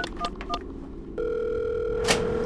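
Push-button wall telephone being dialled: three short keypad tones in quick succession, then a steady line tone from just past halfway.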